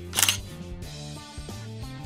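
DSLR shutter firing once, a short sharp mechanical click about a fifth of a second in, taking a shot at 1/400 s. Quiet background music plays underneath.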